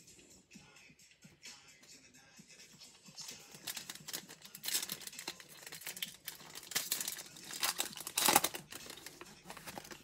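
Foil wrapper of a Donruss Optic trading-card pack being torn open and crinkled. The crackling begins a few seconds in and is loudest near the end, with background music underneath.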